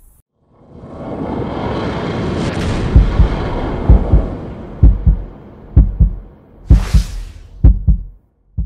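Cinematic logo sting: a swelling rush of noise that builds over the first few seconds, followed by a series of deep booming hits about once a second, with a short hissing whoosh about seven seconds in.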